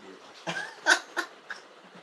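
Laughter in a few short bursts, the loudest about a second in.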